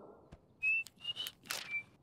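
Three short, high whistled notes, each slightly higher or held steady, with a few faint clicks between them, quietly over a farm scene.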